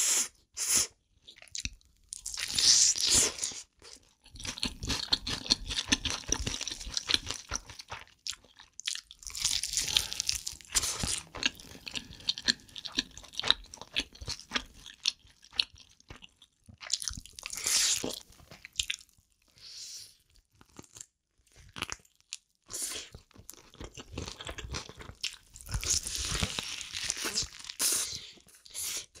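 Close-miked eating: someone crunches and chews sauced fried chicken and spicy stir-fried noodles, with wet mouth clicks between several louder bursts of crunching.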